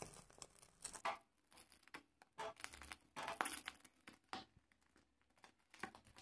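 Faint, irregular crackling of chicken feet's skin scorching over a low gas-burner flame, a few short crackles at a time with quiet gaps between.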